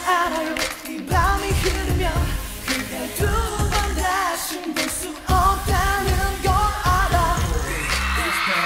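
A male pop singer singing a Korean-language dance-pop song live over a backing track with a heavy bass beat, the beat dropping out briefly a couple of times.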